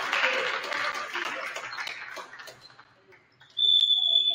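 Spectators and players cheering and calling out after a point, fading away over the first couple of seconds. Near the end a referee's whistle blows one sharp, steady high note, starting suddenly and loud, the signal for the next serve.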